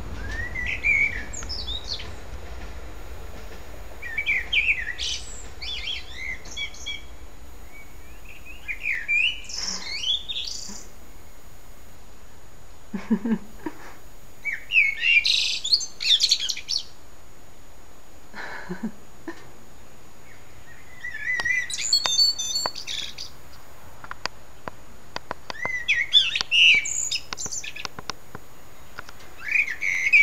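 A songbird singing at dusk: about six short, varied phrases of whistled and warbled notes, each a second or two long, with pauses of a few seconds between them.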